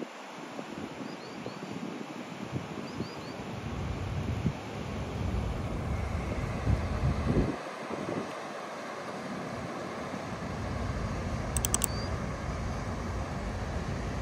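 Rushing water of river rapids, a steady hiss, with wind gusting on the microphone. A few faint high chirps about one and three seconds in.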